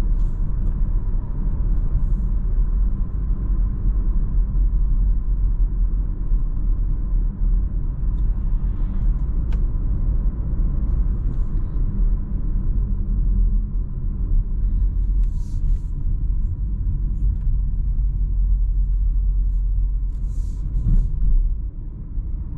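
Renault Arkana 1.3 TCe heard from inside the cabin while driving at about 65 km/h: a steady low tyre, road and engine rumble with a faint steady whine, easing a little near the end as the car slows.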